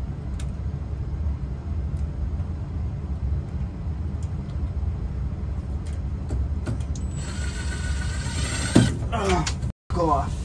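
Cordless drill boring into tough old wood overhead. It whines at speed for nearly two seconds near the end, then a sharp knock, over a steady low hum.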